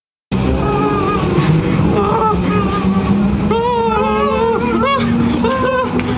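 Running noise inside a London Underground train carriage: a steady low hum and rumble, with high wavering tones over it. It starts abruptly after a brief silence.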